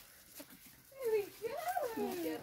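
A person's voice calling out in long, drawn-out tones that glide down and up, starting about a second in, with no clear words.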